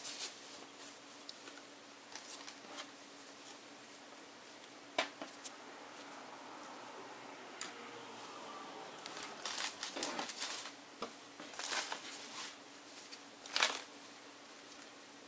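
Fabric rustling and brushing as a thin, stretchy tube scarf is handled and smoothed flat on a wooden tabletop, with scattered light clicks and taps. The handling is sparse at first and busier in the second half, with a sharper rustle near the end.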